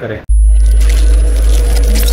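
Channel logo intro sound effect: a loud deep bass rumble that starts suddenly about a quarter second in and holds steady, with rapid clicks and a thin high tone over it.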